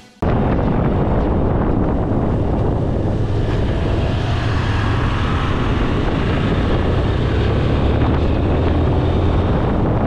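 Steady wind noise on the microphone of a camera on a moving motorcycle, heavy and low, with the bike's road and engine noise mixed in. It starts abruptly just after the start.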